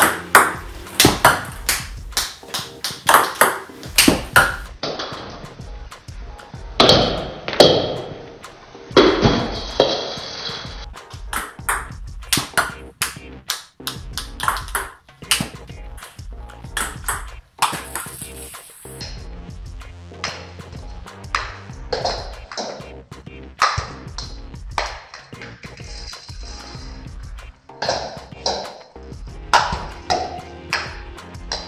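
Table tennis ball clicking off the racket and bouncing on the table, serve after serve, in quick runs of sharp clicks, over background music.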